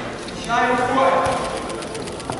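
A person shouting one held call, loud, starting about half a second in, followed by a quick run of short sharp clicks or knocks.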